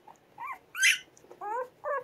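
Young Cane Corso puppies whimpering: several short, high squeaks that bend in pitch, with a brief hissing rustle about a second in.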